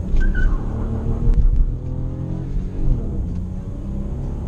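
Hyundai HB20's 1.0 three-cylinder engine under hard acceleration from a standstill, heard inside the cabin: a low rumble whose pitch climbs steadily, then drops about three seconds in at a gear change.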